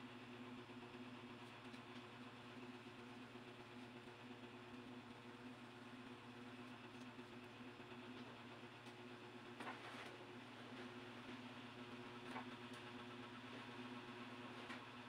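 Near silence: a faint steady low hum of room tone, with a few soft ticks, the clearest about ten seconds in.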